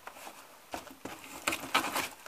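Hands handling a paper letter and a cardboard box: rustles and a few light knocks and taps that start about three-quarters of a second in.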